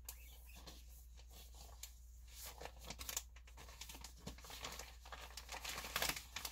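Faint, irregular crinkling and rustling of a clear plastic zip bag being handled.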